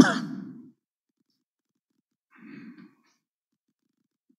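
A man sighing close to a desk microphone: a sudden loud exhale that fades within about a second, followed by a softer, shorter breath about two and a half seconds in.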